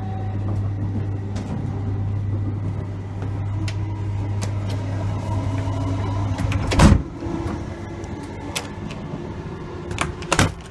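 Class 321 electric multiple unit running, heard from inside the carriage: a steady low hum and rumble with scattered sharp clicks. About seven seconds in there is a single loud thump, and the running is quieter after it.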